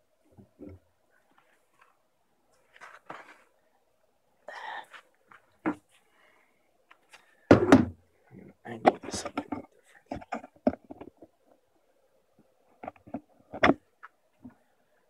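Handling noises as a camera is fitted into a holder and a small foam RC hovercraft is set down on a concrete floor: scattered knocks, clatters and rustles, the loudest a little over 7.5 seconds in.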